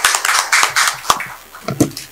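A few people applauding with their hands, the clapping thinning out in the second half, with a sharper knock near the end.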